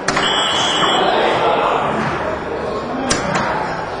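A soft-tip dart strikes an electronic dartboard, and the board plays its electronic hit effect for a triple, a steady high tone lasting under a second, over hall crowd noise. Two short sharp clicks follow a little after three seconds.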